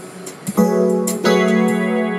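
Keyboard music: held electric-piano chords, a new chord struck about half a second in and another a little past one second, with short sharp ticks in the highs.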